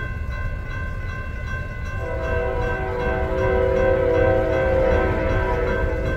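An approaching Norfolk Southern freight locomotive's air horn sounds one long, steady chord, starting about two seconds in and held for about four seconds. Under it, a grade-crossing bell rings steadily throughout.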